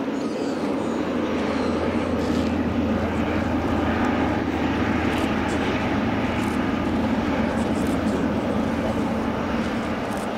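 Airliner's engines running steadily, growing a little louder over the first few seconds and then holding.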